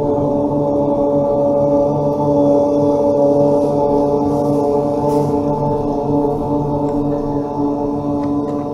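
A long 'om' chanted and held on one steady pitch, the drawn-out middle of the syllable sustained without a break.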